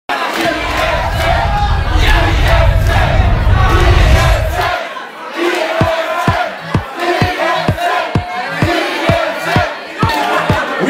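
Club crowd shouting and cheering over loud dance music. A deep, heavy bass fills the first half; then it drops out and a steady kick-drum beat of about two beats a second starts near the middle.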